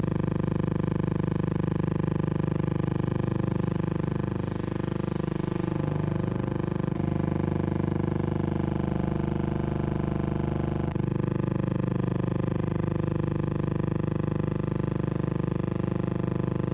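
Steady hum with many evenly spaced overtones that runs unchanged across the picture cuts, the noise of a soundtrack that carries no live sound, with two faint ticks, about seven and eleven seconds in.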